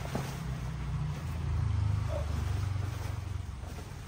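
A motor vehicle's engine running, a low steady hum that swells a little midway and then eases off.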